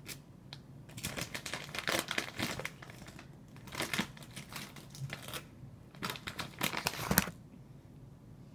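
Plastic gummy-candy pouch crinkling as it is handled and folded, in irregular runs of crackles; the loudest crackle comes just after seven seconds in.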